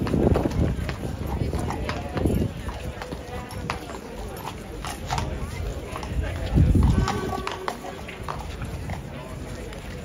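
Shod horse hooves clopping and scraping on stone cobbles as a cavalry horse shifts, turns and walks, with a few heavier low thumps, the loudest about seven seconds in, over the murmur of onlookers.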